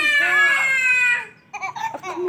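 A high-pitched, drawn-out shriek from a young voice, lasting about a second and falling slightly in pitch, followed by a few short vocal sounds near the end.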